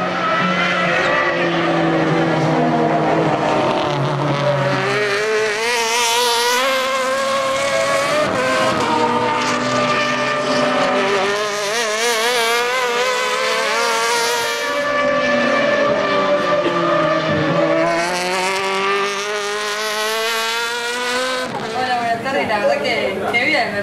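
Super TC2000 touring car engines working through a corner, the engine note repeatedly dropping as the cars slow and climbing again as they accelerate away.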